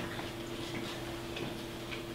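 Quiet room tone with a steady low electrical hum and a few faint ticks.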